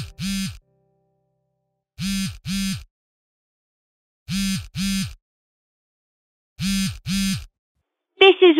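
A phone ringing with a double ring: four ring-rings about two seconds apart, going unanswered until the voicemail picks up.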